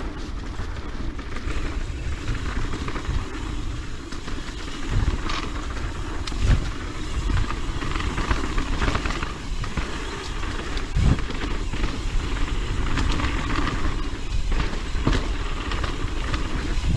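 Propain Tyee mountain bike ridden over a dirt singletrack: steady noise of tyres on dirt and wind on the camera's microphone, with the bike rattling and several sharp knocks as it goes over bumps.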